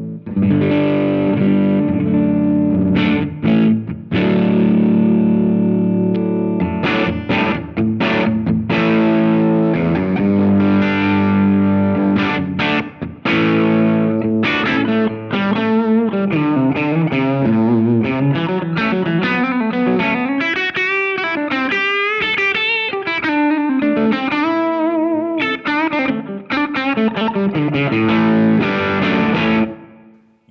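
Les Paul-style electric guitar played through a Greer Soma 63 transformer preamp/overdrive pedal, modelled on a Fender Brownface amp, with a mild overdriven grit. Held, ringing chords come first, then fast single-note blues lead lines with string bends and vibrato, stopping just before the end.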